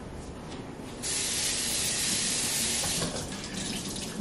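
Kitchen tap turned on and running into the sink for about two seconds, starting suddenly about a second in and cut off about three seconds in, most likely to wet a cloth.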